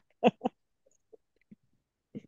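A man's voice finishing a word, then a few brief, faint snatches of a woman's laughter, each cut short with dead silence between, as a video call passes sound.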